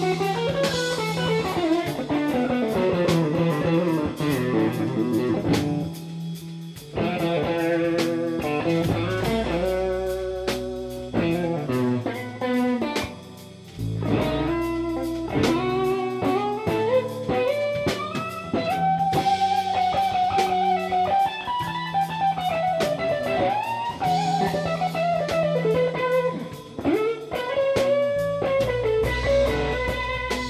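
Small live band: an electric guitar plays a single-note lead line with bends and slides over bass notes and a drum kit. The music drops back briefly twice before the line picks up again.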